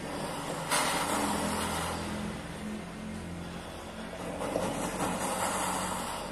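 Jeweller's torch flame hissing as it heats a ring. The hiss comes on strongly about a second in and swells again near the end, over a steady low motor hum.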